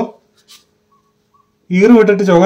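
A person speaking in short phrases, with a pause of about a second and a half between them.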